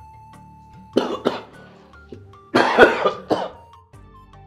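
A man coughing: one short cough about a second in, then a longer rough coughing fit with several pulses near the end, over quiet background music.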